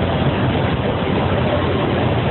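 A fire engine's engine idling: a steady, continuous rumble.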